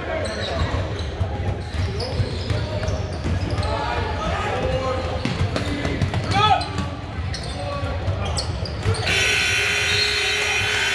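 Youth basketball game in a gym: voices of players and spectators, with the ball bouncing on the hardwood floor. About nine seconds in, a harsh, steady buzzer starts and is still sounding at the end.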